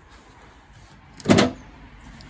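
A single brief, loud bump a little over a second in.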